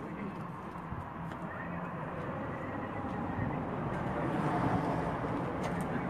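Outdoor street noise: traffic passing on the road, growing louder toward the end, with indistinct voices in the background.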